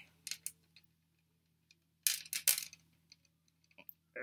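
A necklace of clear faceted plastic beads on a metal chain clicking and jingling lightly as it is handled. The clicks come in a few short clusters, the loudest about two seconds in.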